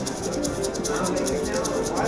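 Siberian Storm slot machine spinning its reels in the free-spins bonus: a fast, even ticking over the game's bonus music.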